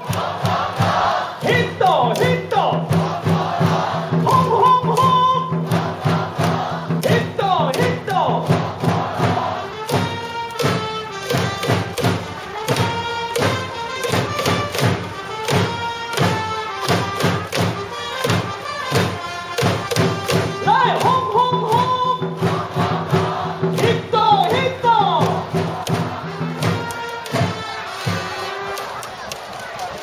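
Baseball cheering-section cheer song: music with a steady drum beat, and a crowd of fans chanting and shouting along for the batter in time with it.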